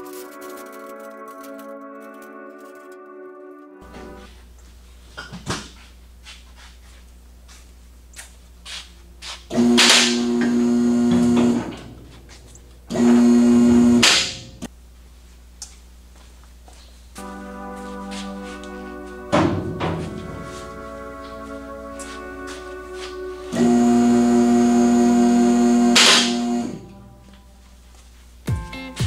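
Electric pump motor of a two-post vehicle lift running in three short bursts, a steady loud hum that starts and stops abruptly each time, as the lift raises a pickup's bed off its frame on chains. Background music plays underneath.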